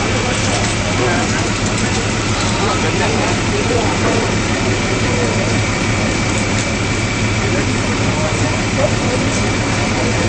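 Ambulance engine idling steadily with a constant low hum, under indistinct voices of people around the stretcher.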